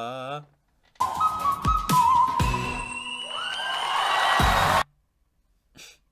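Live concert music: a male singer holds a very high, whistle-register note over a band with heavy drum hits. The music cuts off abruptly after about four seconds.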